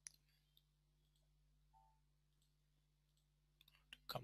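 Near silence with a few faint computer mouse clicks: one right at the start and a quick run of clicks near the end.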